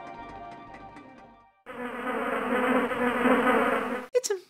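Soft music fades out over the first second and a half; after a brief silence, a housefly starts buzzing steadily and loudly.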